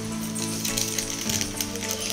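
Background music with sustained tones, over light clicks and scrapes of a metal spoon scooping half-boiled rice out of a steel bowl into a pressure cooker.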